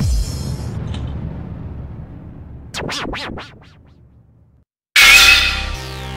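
Edited-in sound effects and electronic music. A ringing jingle fades away over the first few seconds, and a few quick whooshes sweep past about three seconds in. After a moment of silence, a loud sudden hit launches electronic background music near the end.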